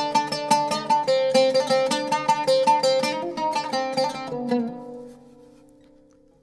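Oud plucked with a plectrum in a quick run of single notes, about four or five a second. The run stops about four and a half seconds in and the last note rings out and fades away.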